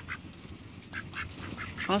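A young domestic drake making a few soft, short, whispery raspy calls instead of a quack, the low breathy voice that marks a male duck apart from the female's loud quack. A voice begins right at the end.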